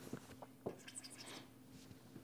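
Faint tapping and scratching of a stylus on a pen-tablet screen: a sharp tap about two-thirds of a second in, then a quick run of short scribbling strokes crossing out a word, over a faint steady hum.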